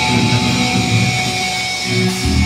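Thrash metal band playing live through a festival PA, heard from within the crowd, with electric guitars prominent.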